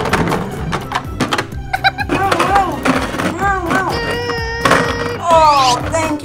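Playful background music with wordless voice-like sounds over it, a few held notes about four seconds in, and a falling slide sound near the end.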